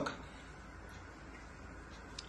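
Faint steady room noise with a low hum; no distinct sound event.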